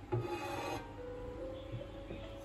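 Aluminium laptop stand being handled and tilted open: a short scraping rub of hands and metal, loudest as it begins and lasting under a second near the start.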